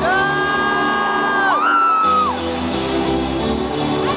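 Trance dance music played loud over an arena sound system, heard from within the crowd, with long held high lead notes and crowd whoops. The bass cuts out about a second and a half in and comes back near three seconds.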